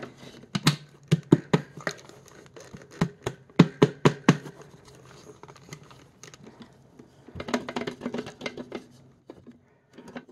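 Irregular sharp taps and knocks on a clear plastic vacuum dust bin, struck by hand to shake trapped sand out of it. The taps come thickest in the first few seconds and again in a cluster near the end.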